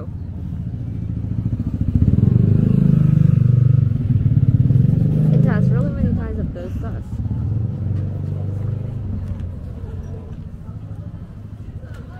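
A motor vehicle's engine passing close by, a low rumble that builds about two seconds in, is loudest for a few seconds and fades away by about ten seconds.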